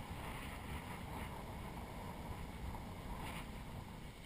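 Faint wind rumbling on the microphone, a low, even noise with no distinct events.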